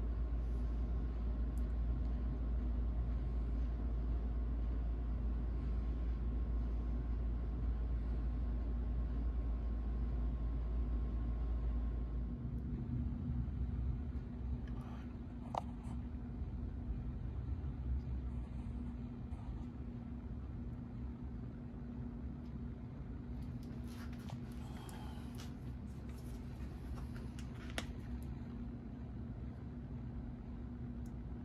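Steady low workshop background hum with a deep rumble that stops about twelve seconds in, leaving a quieter steady hum. There are a couple of light clicks and a few seconds of rustling near the end as the hands work over the crankcase.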